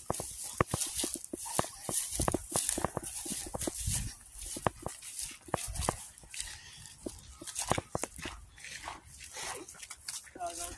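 Footsteps and rustling as someone walks through long dry grass and along a gravel path: an irregular run of short crackles and swishes.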